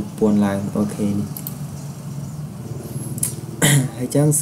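A voice talking in short phrases over a steady low hum, with a brief hissing sound near the end.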